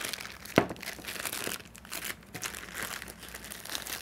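Clear plastic bag crinkling and crackling irregularly as hands pull and twist it to get it open, with one sharper crack about half a second in.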